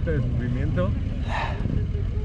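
Voices talking nearby, over a steady low rumble.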